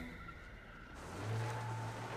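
Film trailer soundtrack effects: a rushing noise that builds about a second in, joined by a steady low rumble.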